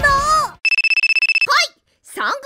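Electronic telephone ringing: one high, steady trill with a rapid pulse, lasting just under a second.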